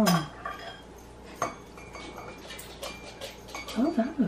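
A teaspoon stirring tea in a china teacup: light, scattered clinks of the spoon against the cup, a few close together in the middle.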